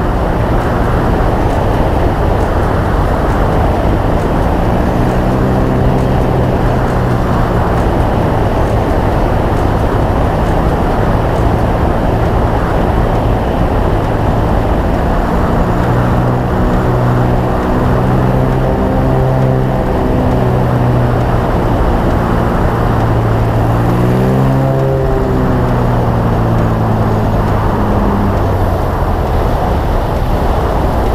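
Light aircraft's engine and propeller at low power through a landing approach, under heavy wind rushing over the exterior-mounted microphone. The engine note shifts in pitch and briefly rises and falls late on, then fades as the plane settles onto the grass.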